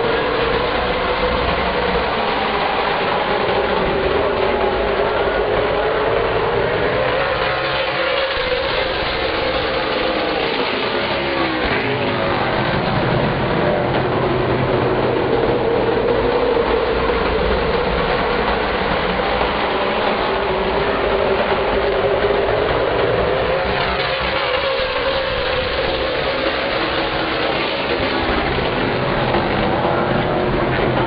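A pack of stock cars' V8 engines running around a short oval track in a continuous loud drone. The pitch wavers and falls in sweeps as cars pass, about a dozen seconds in and again past the two-thirds mark.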